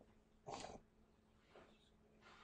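Near silence: room tone, with one faint short sound about half a second in.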